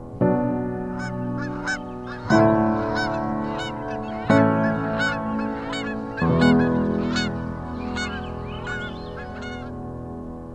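Geese honking, many short calls one after another, over sustained music chords that change about every two seconds. The calls start about a second in and stop near the end.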